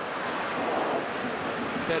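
Large stadium crowd, a steady roar of many voices swelling slightly in the first second.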